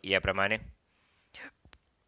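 Speech: a man says a single word, then a short quiet pause holding a brief breath and one faint click.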